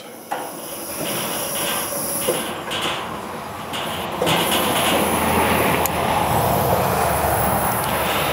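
Old Coleman pressurized liquid-fuel camp stove with its fuel valve open, the gas hissing steadily at the burner during its first minute of warm-up; the hiss grows louder about four seconds in.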